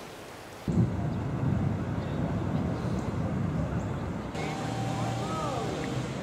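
Low rumble of street traffic that starts suddenly under a second in, after a moment of room tone. A steady hum and a few faint rising-and-falling tones join it near the end.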